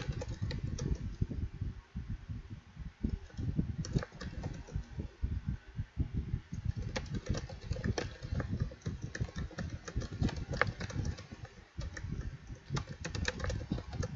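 Typing on a computer keyboard: a quick, irregular run of keystrokes with brief pauses between bursts.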